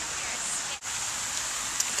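Steady outdoor background hiss, broken by a brief dropout a little under a second in.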